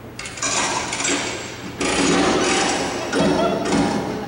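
Live theatre audience cheering and laughing loudly in three swells.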